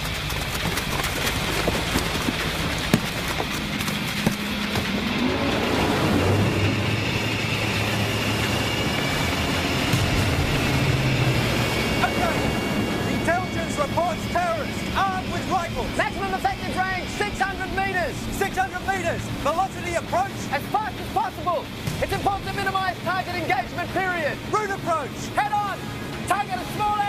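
Engine running under a dramatic music score, with a rising sweep about five seconds in; from about halfway a fast run of short pitched notes takes over.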